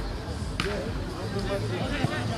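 A football being kicked on a small-sided artificial-turf pitch: one sharp thud about half a second in, then a couple of lighter knocks near the end, over distant shouting.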